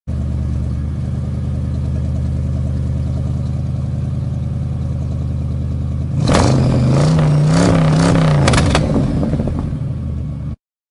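Car engine idling steadily, then revved a few times from about six seconds in, louder, the pitch rising and falling with each blip.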